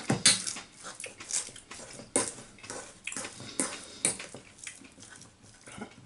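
A metal fork working through minced sausage meat in a stainless steel bowl, with irregular clinks and scrapes of the fork against the bowl.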